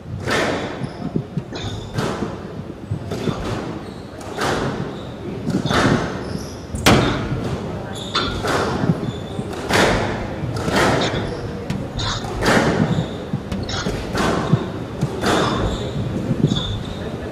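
Squash rally on a glass court: the ball is struck hard by the rackets and slaps off the walls, a sharp knock about once a second with each one echoing in the hall. Short high shoe squeaks come from the court floor between shots.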